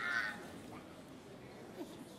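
A single short, high shout or whoop from a person, then faint murmur from a seated audience.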